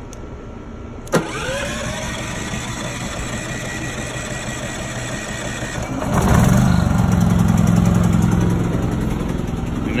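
A propane-fuelled portable inverter generator started on its electric start: a sharp click about a second in, then the engine catches and runs up to speed with a rising whine. It then runs steadily and grows louder about six seconds in.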